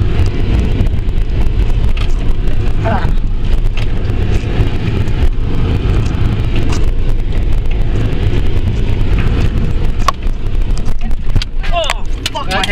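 Four-wheel-drive vehicle crawling down a steep, rutted dirt track, heard from inside the cabin: a steady low engine and drivetrain rumble with the body jolting, and a few sharp knocks near the end as the wheels drop over ruts.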